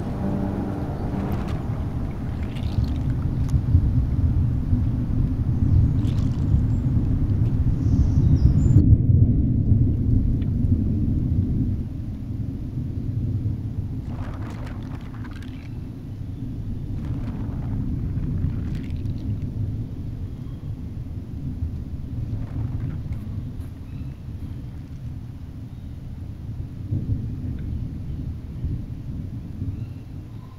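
Muffled low rumble of water heard from beneath a pond's surface, loudest in the first half and easing after the middle. A few short watery bursts come through in the second half.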